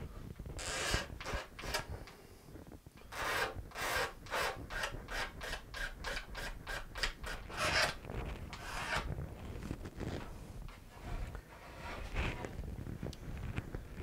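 A steel blade, used as a hand scraper, scraping the wooden end wedge of a guitar body down flush with the sides. Short quick strokes come in a run of about three a second from a few seconds in, with looser strokes before and after.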